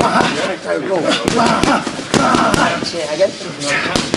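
Boxing gloves striking handheld focus mitts during pad work: several sharp smacks in quick succession, with voices talking through them.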